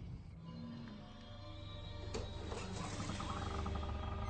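Eerie TV-drama soundtrack music over a low steady rumble, with a sudden sharp hit about halfway through and a pulsing, repeating tone building after it.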